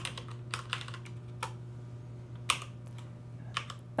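Computer keyboard keys being pressed: a handful of separate keystrokes spread out, with one louder key press about two and a half seconds in, over a steady low hum.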